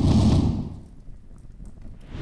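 A deep whooshing boom sound effect for the animated flame logo, hitting at the start and fading out over about a second.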